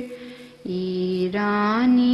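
A single unaccompanied voice chanting a devotional poem in Urdu, a short pause for breath at the start and then long held notes that step up in pitch.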